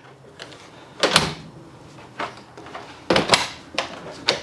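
Dual-fuel RV refrigerator doors being handled, shut and opened: two solid knocks about one second and three seconds in, with lighter clicks between.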